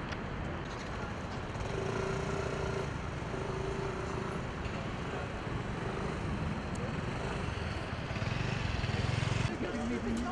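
Outdoor city street ambience: steady traffic noise with indistinct voices. Two short held tones sound about two and four seconds in, and a low rumble grows louder near the end as a vehicle passes.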